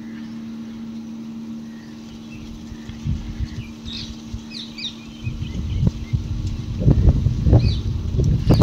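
Wind buffeting the microphone in gusts that grow stronger in the second half. A few short bird chirps come around the middle, over a steady low hum.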